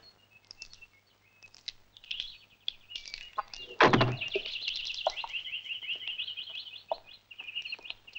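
Birds chirping and trilling, growing busier after the first few seconds. A single heavy thud comes about four seconds in, with a few lighter taps around it.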